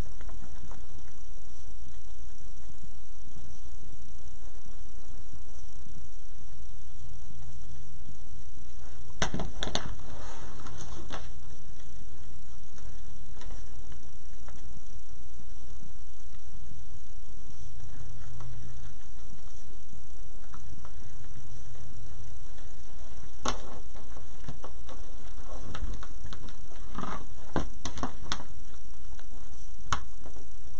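Scattered clicks and rustles from hands working stiff deco mesh and wreath pieces, in small clusters around ten seconds in and again in the last third, over a steady background hiss and hum.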